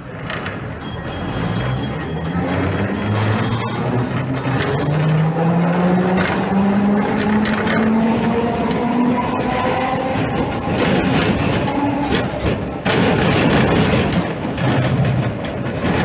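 N3 tram's traction motors and gearing whining, rising steadily in pitch as the tram accelerates, over the rumble and clatter of steel wheels on the rails. The running noise gets louder about thirteen seconds in.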